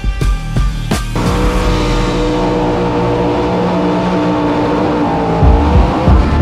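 Drag-racing car's engine held at high, steady revs while it spins its tyres in a smoky burnout, cutting in suddenly about a second in after a burst of music. The engine note sags slightly near the end as music beats come back in.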